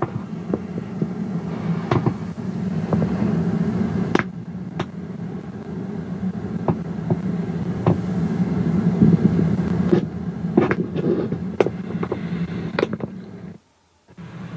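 Soundtrack of a video playing through a Caliber RMD579DAB-BT car head unit's stereo speakers: a steady low rumble with scattered clicks. It drops out abruptly for a moment just before the end.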